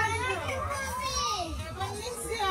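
Several people's voices talking and calling out at once, some of them high-pitched like children's, over a steady low rumble.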